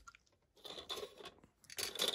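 Plastic model kit sprues being handled on a cutting mat: faint crackling and light clicks of the plastic, with a few sharper clicks near the end.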